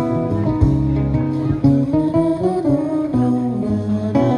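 Live band playing, guitars strumming chords over low bass notes.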